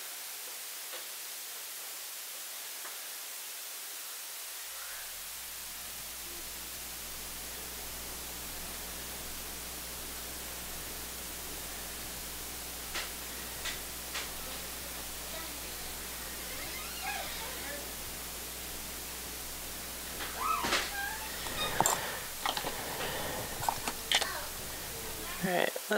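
Workbench room tone: a steady hiss, joined about four seconds in by a low electrical hum that switches on and stays. A few light clicks around the middle, then faint murmured voice sounds and handling noises near the end.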